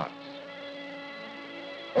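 A steady, buzzing drone of several held tones from the film's background music, sounding under a pause in the narration.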